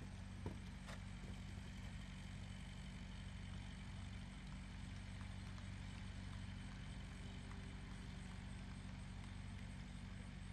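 A steady low hum under faint outdoor background noise, with one sharp tap about half a second in.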